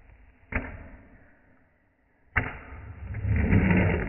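Fingerboard (miniature skateboard) tricks on a tabletop: a sharp clack about half a second in, then another clack a little past two seconds followed by a scrape that grows louder toward the end.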